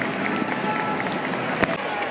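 Crowd noise in a large hall: many spectators talking at once, with one sharp knock about one and a half seconds in.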